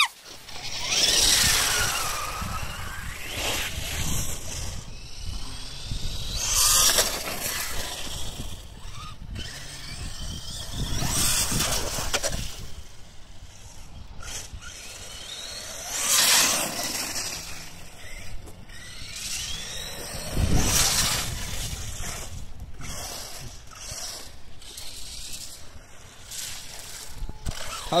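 Remote-control Vaterra Halix monster truck driving on a wet street and through puddles: the motor whine rises and falls with the throttle under a hiss of tyres and water spray. The sound swells loud several times as the truck passes.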